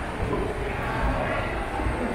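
Busy indoor shopping-mall ambience: a steady low rumble with indistinct voices of shoppers.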